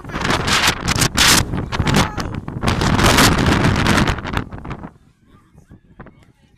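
Strong wind buffeting the phone's microphone in loud, gusty blasts, dropping away about a second before the end.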